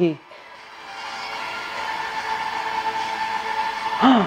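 Film trailer soundtrack: a sustained, swelling tone over a rushing haze that builds steadily louder for about three seconds.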